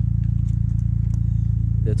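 Honda Civic Turbo's 1.5-litre four-cylinder idling through a modified exhaust: a steady, loud low drone with a fast, even pulse.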